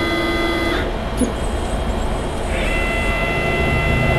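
CNC mill's axis motors whining at a steady pitch while jogging. The first axis runs for under a second and stops; after a short pause, about two and a half seconds in, the Z axis starts moving down with a different, higher whine that carries on. A faint click about a second in.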